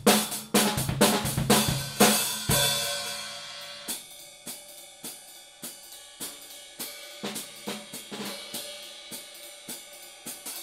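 A drum kit groove on a set of 13-inch Zildjian K/Z hi-hats (K top, Z bottom), with snare and bass drum. It ends about two and a half seconds in on a loud stroke that rings out. The hi-hats are then played alone with sticks in lighter, evenly spaced strokes.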